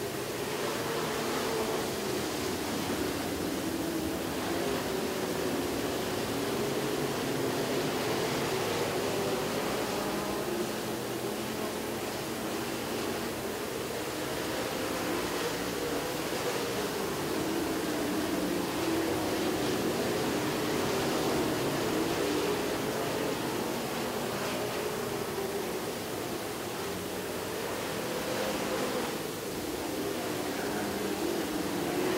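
Dirt-track stock cars' engines running as a pack around the oval: a steady drone whose pitch slowly rises and falls as the cars lap the track.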